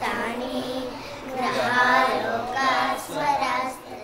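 Young schoolgirls singing together, holding notes in short phrases with brief breaks between them.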